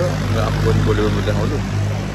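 A man's voice over a steady low mechanical hum, like a motor running.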